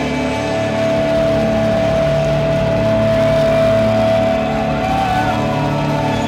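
Loud amplified live rock band holding sustained droning notes: one high note is held for several seconds, then sliding pitches come in near the end.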